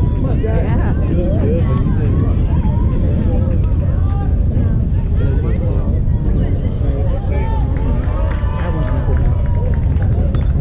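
Overlapping voices of spectators and players talking and calling out, no single clear speaker, over a steady low rumble. One voice calls out louder near the end.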